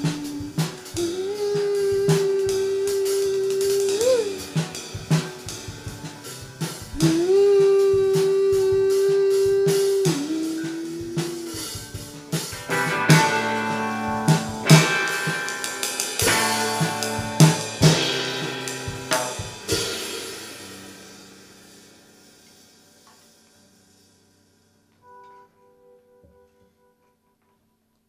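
Live rock band playing the end of a song: drum-kit hits and cymbals under long held notes, building to a loud final flourish about thirteen seconds in. The last chord then rings out and fades almost to silence.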